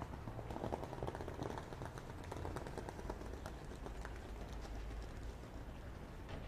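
Faint background rumble with a scatter of quick clicks and taps, thickest in the first half and thinning out toward the end.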